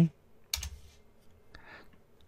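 Two computer keyboard keystrokes, as a value is typed in: one sharp key press about half a second in, and a fainter one near the end.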